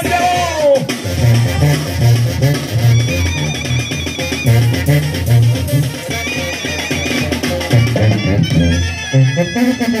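Latin brass band music, with a bass line bouncing between two low notes in an even beat, drums, and brass.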